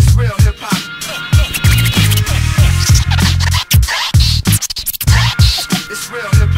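DJ scratching on a turntable over a hip hop beat with heavy bass. Quick sweeps up and down in pitch are chopped into short cuts in rapid succession.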